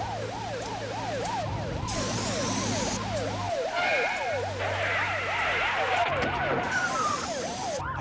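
Ambulance siren in a fast yelp, its pitch sweeping up and down a few times a second, at times two sirens overlapping. A steady hiss runs beneath it.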